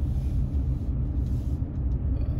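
Steady low rumble of a car driving slowly, engine and tyre noise heard from inside the cabin.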